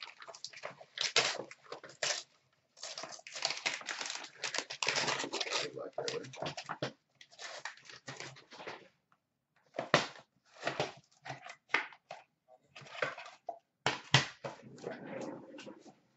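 Gold foil wrapping crinkled and torn off a mystery box, then a cardboard card box handled and opened, in irregular rustling bursts with a few sharp knocks as things are set down on a glass counter.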